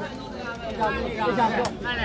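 Voices of onlookers talking over one another, with one brief sharp tap near the end.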